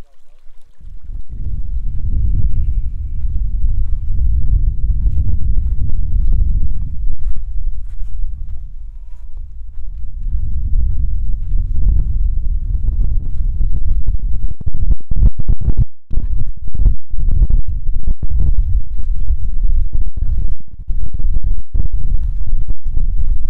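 Wind buffeting the microphone: a loud, low rumble that comes up about a second in, eases for a couple of seconds midway, then returns in gusts with brief dropouts.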